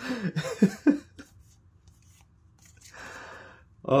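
A man laughing briefly, then a pause and a soft rushing noise lasting under a second near the end.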